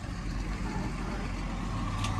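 Steady low rumble of a large truck's engine idling.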